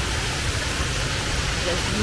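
Steady rushing splash of a small rock waterfall pouring into a swimming pool. A woman's voice starts speaking near the end.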